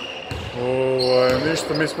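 Basketballs bouncing on a hard gym floor, a few sharp knocks through the two seconds. Over them a man holds a drawn-out hesitation sound, an unbroken 'ehh' of about a second.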